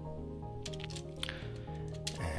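Background music with steady held notes, and a couple of faint computer-keyboard clicks as code is typed.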